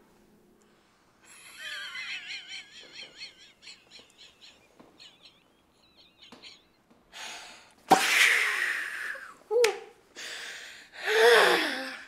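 People laughing: a high, wavering giggle about a second in, then louder breathy bursts of laughter near the end.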